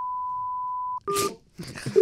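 A steady electronic beep at one high pitch holds and cuts off abruptly about a second in. A brief burst of mixed sound with two shorter tones follows.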